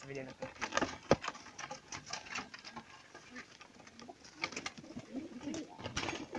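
Domestic pigeons cooing in a wooden loft, with a run of scuffling, clicks and knocks in the first couple of seconds as a pigeon is caught by hand. The loudest sound is a single sharp knock about a second in.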